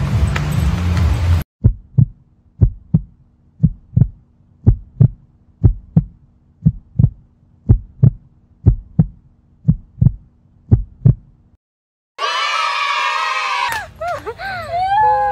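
Heartbeat sound effect: about ten paired thuds, roughly one lub-dub a second, over a faint steady hum, starting abruptly when the surrounding noise cuts off about a second and a half in and stopping about two seconds before the end. Near the end a loud burst of wavering, voice-like sound follows.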